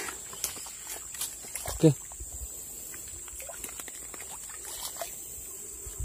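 A steady high-pitched insect drone runs under a quiet outdoor background. A few light clicks and rustles of handling come in the first two seconds, and a short grunt-like vocal sound comes just before two seconds in.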